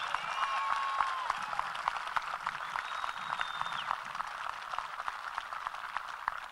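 Audience applauding, building over the first second and then slowly tapering.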